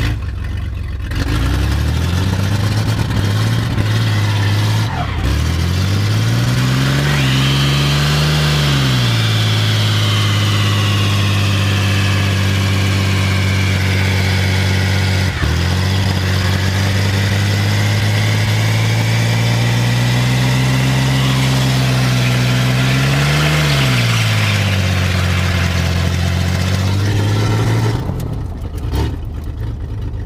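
Chevy S-10 pickup engine, which the owner says is knocking, revved up and held high for a burnout while the rear tires squeal for about fifteen seconds. The revs then drop back to a steady idle, and the sound falls away near the end.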